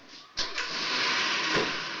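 A car door slams shut about half a second in, followed at once by a steady rushing noise from the car as it starts off, with a second thump near the middle.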